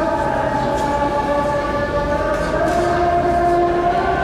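A man's voice chanting a prayer in long, held notes that shift slowly in pitch.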